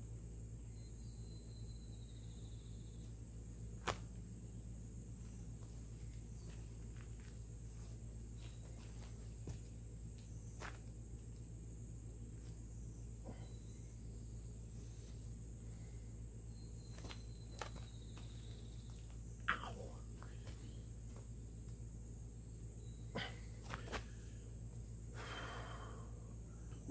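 Quiet woodland background: a steady high insect drone over a low steady rumble, with a few faint clicks and rustles from paracord being handled and tied one-handed. The sharpest click comes about four seconds in and another just before twenty seconds.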